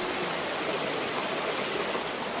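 Small rainforest stream running over mossy rocks in little cascades: a steady rush of water.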